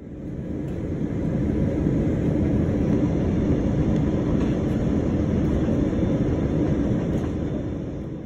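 Airliner cabin noise heard from a window seat during the descent to landing: a steady, low rushing noise of engines and airflow, fading in over the first second.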